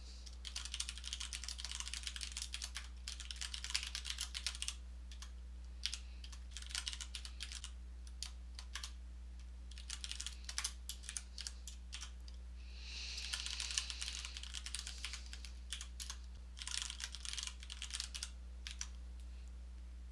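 Typing on a computer keyboard: irregular bursts of keystrokes separated by short pauses, as lines of code are entered.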